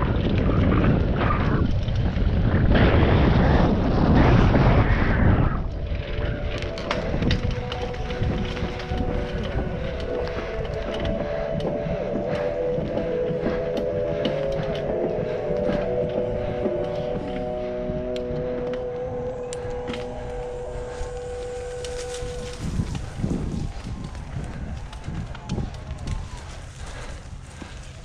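Mountain bike descending a dirt trail: loud wind and tyre rumble for the first five seconds, then the rear freehub buzzing steadily while coasting, its pitch shifting with speed and fading away near the end.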